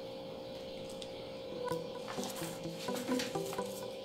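Soft background guitar music, with a few faint taps and scrapes of a pen and tape measure on paper.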